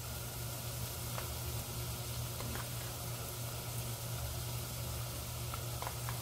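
Chopped onions sizzling steadily in hot oil in a stainless steel saucepan, over a low steady hum, with a few faint clicks.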